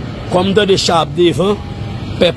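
A man speaking, probably in Haitian Creole, over a steady low background rumble. Brief pauses fall at the start and about halfway through.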